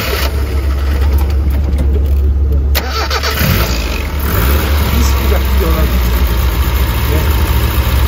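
Isuzu Piazza's fuel-injected G200 four-cylinder engine idling steadily, heard from close over the open engine bay. It runs smoothly, with no unevenness or shaking.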